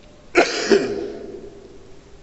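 A man clearing his throat twice in quick succession into a handheld microphone, about a third of a second in and again just after, with a reverberant hall echo trailing off.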